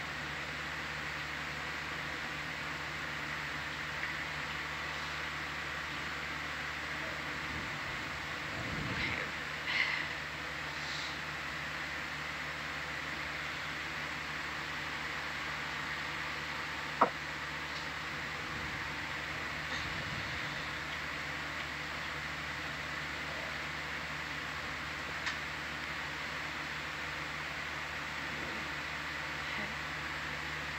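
Steady equipment hum with a faint high whine, the room tone of a ship's ROV control room. A single sharp click comes about 17 seconds in, and there is a soft brief rustle around 9 to 10 seconds.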